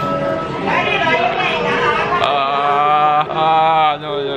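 A young man's drawn-out groans and vocal noises of disgust as he chews a mouthful of fried crickets, with a short "oh" about a second in. The groans are longest and loudest in the second half.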